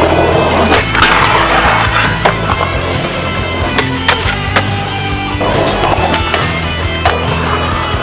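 Skateboard on concrete and metal: several sharp knocks from board pops and landings, and stretches of rough rolling noise, the longest about a second in, all under loud music.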